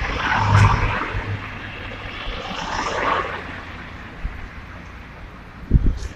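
Cars driving past on a street, tyre and engine noise swelling and fading, loudest as one passes close in the first second and again around three seconds in, then quieter. Short wind buffets on the microphone near the end.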